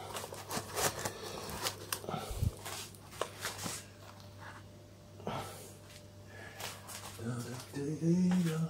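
Faint, irregular crackling clicks, thickest in the first few seconds: malt vinegar fizzing as it reacts with leaked alkaline battery residue in a Canon T70's battery compartment.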